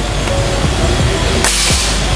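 A single shot from a regulated PCP air rifle (Predator VGround 2) about a second and a half in: a sudden sharp hiss of released air that fades within half a second.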